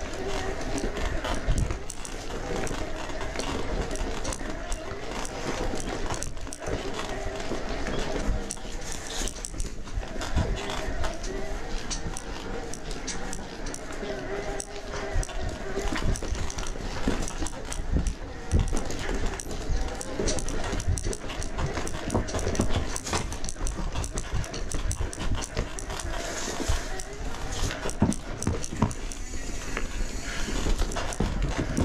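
Electric mountain bike climbing rocky singletrack. The mid-drive motor whines under assist, and the whine comes and goes, over a steady clatter and crunch of tyres and frame on rocks.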